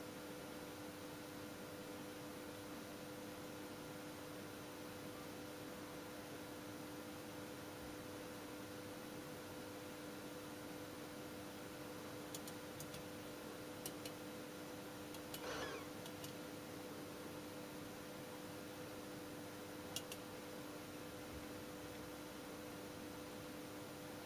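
Quiet workbench room tone: a steady faint hiss with a low electrical hum, broken by a few faint light ticks in the second half as a logic probe's tip is moved across a chip's pins.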